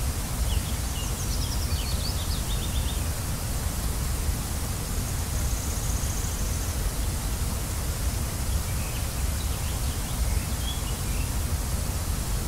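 Steady rushing noise of a waterfall, with a few faint bird chirps in the first few seconds.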